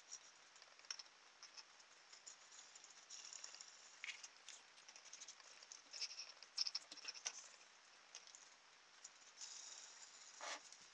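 Faint handling noises of small plastic parts: scattered light clicks and scrapes as plastic bottle-top wheels and tubing spacers are worked onto a wooden skewer axle by hand, with a few sharper clicks past the middle.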